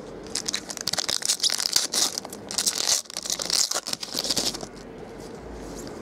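Foil wrapper of a 2012 Bowman Draft baseball card pack being torn open and crinkled, a dense crackling for about four seconds that then dies down.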